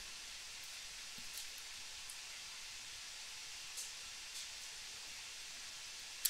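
Quiet steady hiss of room and microphone noise, with a few faint short clicks.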